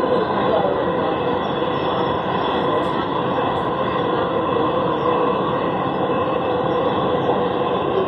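Dubai Metro train running at speed, heard from inside the carriage: a steady rolling rumble of wheels on rail with a faint steady hum.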